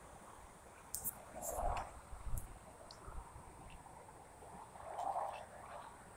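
Faint outdoor background with a few soft rustles and knocks from the phone being handled while the man moves over dry, cut grass. The rustles are loudest about a second and a half in and again about five seconds in.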